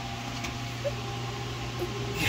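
Steady low mechanical hum with a faint hiss, the even background of the room, with nothing else standing out.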